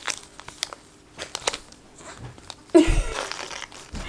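Foil Pokémon TCG booster packs crinkling as they are handled and set down, with small scattered crackles and a louder rustle about three seconds in.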